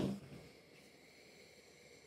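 Sniffing the aroma of an IPA from a glass: a short sniff at the start, then a faint, drawn-out breath in through the nose.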